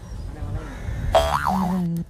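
A comedic 'boing'-type sound effect: a short pitched tone whose pitch wobbles rapidly up and down, starting a little after a second in and lasting under a second.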